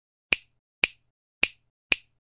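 Four sharp snap-like clicks, evenly spaced about half a second apart: an intro sound effect laid over an animated title as its letters appear.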